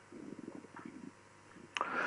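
Faint, irregular scratching of lines being drawn on a board, then a short click and a brief intake of breath near the end.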